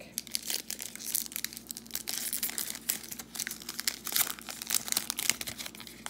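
Foil wrapper of a 2021 Score NFL trading card pack crinkling and tearing as it is opened by hand, a dense run of small crackles; the pack slides open easily.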